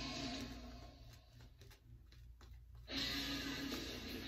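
A shaving brush scrubbing lather over a bearded, stubbled face: a scratchy swishing that stops for about two seconds in the middle and comes back louder near the end. Rock music plays faintly underneath.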